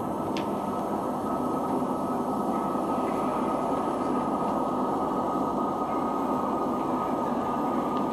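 A steady, dense rumbling noise drone with nothing above the midrange, unchanging throughout.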